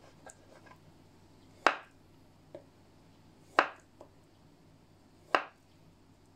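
Kitchen knife slicing through a boiled carrot and striking a wooden cutting board: three sharp knocks about two seconds apart, with faint ticks between them.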